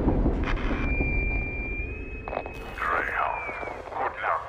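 Film sound design over an underwater submarine shot: a deep rumble that fades over the first second or two, then a long, steady high tone held for nearly three seconds, stepping up slightly midway and sliding down as it stops.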